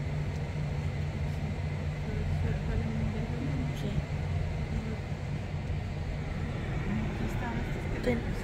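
Steady low rumble of a car's engine and road noise heard from inside the cabin.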